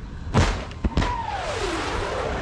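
Two sharp bangs of combat fire about half a second apart, followed by a whine that falls steadily in pitch over most of a second above a lingering rumble.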